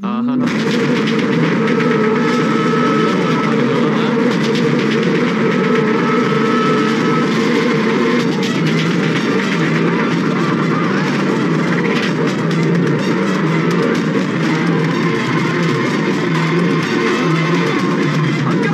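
Loud background film music with busy percussion and held tones.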